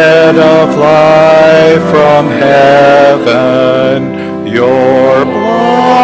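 A church congregation singing a hymn in long held notes with organ accompaniment, with a short break between phrases about four seconds in.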